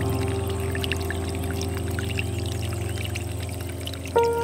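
Slow ambient music of held low notes, easing down a little toward the end, over water trickling and splashing from a bamboo spout into a stone basin.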